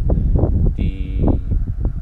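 Wind buffeting the microphone: a loud, irregular low rumble, with a brief snatch of speech about a second in.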